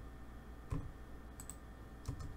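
A single computer mouse button click about three-quarters of a second in, against a low steady background hum.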